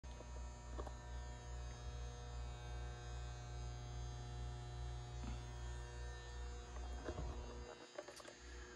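Steady electrical hum from off-grid power equipment, with a stack of thin, steady high-pitched whine tones above it and a few faint clicks. It cuts off suddenly near the end.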